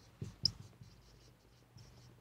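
Marker pen writing on a whiteboard: faint scratching with a few short taps and a high squeak about half a second in.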